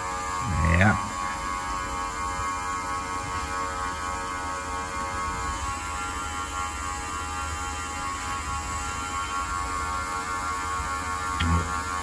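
Small smoke leak-testing machine running with a steady electric hum, pumping smoke into the carburettor to show up air leaks. A brief vocal sound comes about a second in and again near the end.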